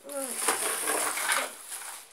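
Rustling, clattering handling noise lasting about a second and a half, with a brief vocal sound at its start.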